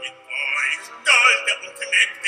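A male operatic bass-baritone singing short phrases with vibrato over orchestral accompaniment, the loudest phrase about a second in.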